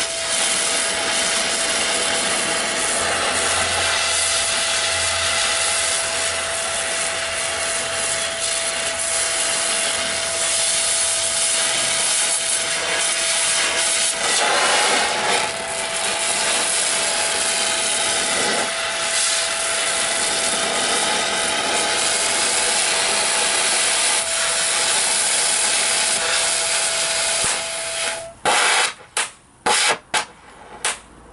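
Oxy-fuel cutting torch cutting through sheet steel: a steady loud hiss with a thin steady whistle, surging briefly about halfway through. Near the end the hiss stops abruptly, followed by a few short bursts.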